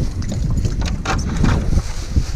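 Wind buffeting the microphone in gusts, with a brief crinkle of a plastic bag being handled about a second in.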